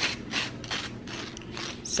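Table knife scraping butter across dry toast in quick repeated strokes, about four or five a second.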